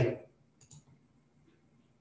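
A computer mouse button clicked: two quick faint clicks close together, about half a second in.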